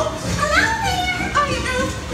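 High, animated cartoon-character voices talking over background music from a dark ride's show soundtrack.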